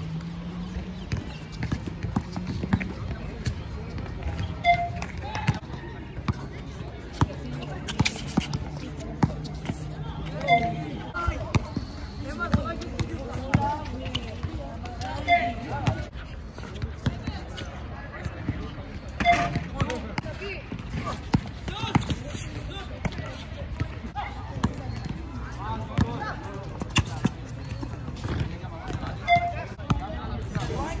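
Basketball dribbled on an outdoor asphalt court, a run of irregular bounces.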